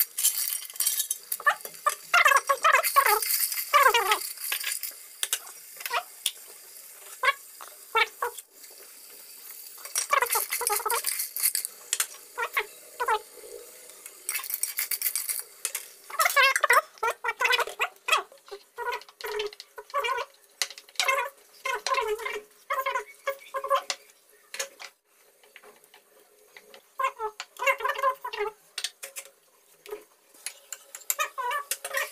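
Snail shells clattering and scraping against an aluminium pot as they are tipped in and stirred, in repeated spells of rattling with short ringing tones and quieter gaps between.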